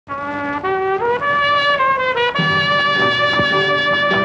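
Film background score: a solo melody line stepping up and down from note to note, joined by a fuller band with lower accompanying parts about two and a half seconds in.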